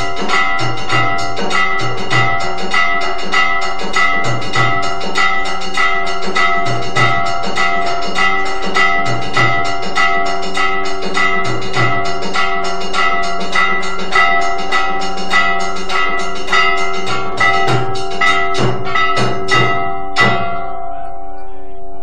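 Temple aarti percussion: bells and gongs struck rapidly in a steady rhythm, about three strikes a second, their ringing tones held over a drum beating underneath. The striking stops about two seconds before the end, leaving the bells ringing.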